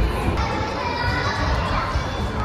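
Many young children playing and calling out at once, a steady overlapping babble of small voices.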